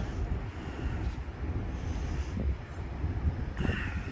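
Wind rumbling and buffeting on the microphone outdoors, an irregular low rumble with faint background hiss.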